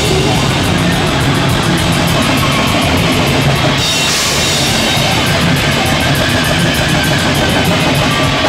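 A live rock band plays a fast, loud heavy song: electric guitar over drums, with rapid, even cymbal hits driving the beat.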